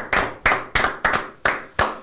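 A few people clapping their hands in a short round of applause, sharp separate claps about three a second that thin out and stop near the end.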